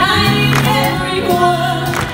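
Live soul band playing, with held bass notes, drum hits and horns, and a woman singing over it through the PA.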